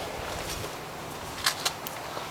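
A few light clicks and knocks as a fuel nozzle and its rubber hose are handled and hung back up, over a steady low hiss.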